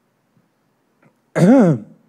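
A man clears his throat once, a short voiced 'ahem' that rises and falls in pitch, about one and a half seconds in after a near-silent pause.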